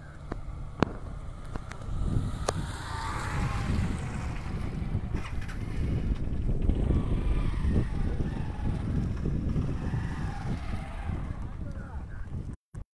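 Wind buffeting a phone microphone in open country, with a motorcycle passing close by about two to three seconds in.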